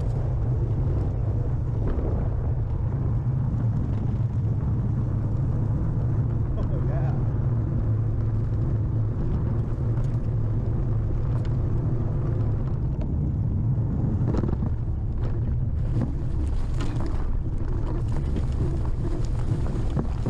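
Motorcycle engine running steadily at trail-riding pace, a constant low drone with no pauses, with some wind on the microphone.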